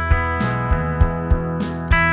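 Electric guitar, a 1963 Gibson SG Standard, played through an amplifier: picked notes and chord shapes ringing out, with a new pick attack about three times a second.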